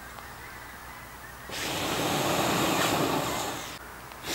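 A person blowing hard onto smouldering embers in a fire pit to revive them and light fresh kindling. A long, breathy blow starts about a second and a half in and runs for about two seconds, then breaks off briefly just before the next blow.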